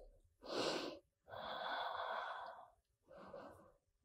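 A woman's soft, audible breaths: a short breath about half a second in, then a longer breath lasting over a second, and a faint short breath near the end.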